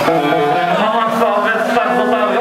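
Live metal band on stage, loud held pitched tones with a man's voice shouting or singing over them.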